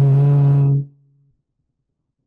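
A woman's voice giving a short, loud, steady hum on one low pitch, under a second long, at the start.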